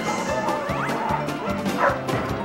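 Dogs barking over music with a steady beat and a bouncing bass line.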